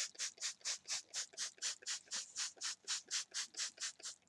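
Trigger spray bottle of plain water spritzing rapidly and steadily, about four sprays a second, wetting down a curly human-hair wig.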